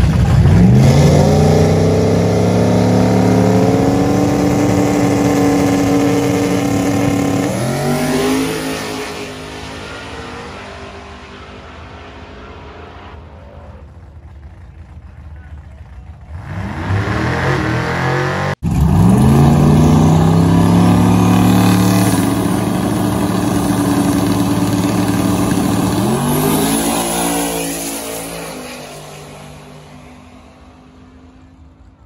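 Turbocharged New Edge Mustang GT's 4.6-litre two-valve V8 launching at full throttle down the drag strip, its revs climbing and dropping back at each upshift as it pulls away and fades. After a sudden cut, a second full-throttle run with the same climbing revs and upshifts, fading near the end.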